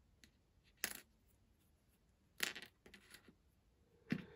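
Faint clicks of small plastic Lego pieces being handled: one short click a little under a second in and a second, slightly longer clatter about two and a half seconds in, with near silence between.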